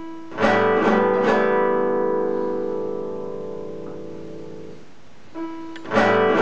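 A recorded guitar loop playing back from a DigiTech JamMan Solo XT looper pedal: three quick strummed chords about a second in ring out and slowly fade, then the strums come round again just before the end. The loop is played loosely, so it does not join up evenly.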